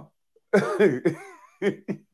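A man laughing: a drawn-out exclaimed "oh" about half a second in, then short ha-ha bursts about four a second near the end.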